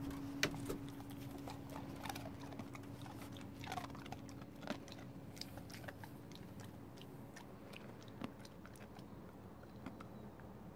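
A dog's claws clicking and tapping irregularly on wooden decking as it walks, over a faint steady low hum.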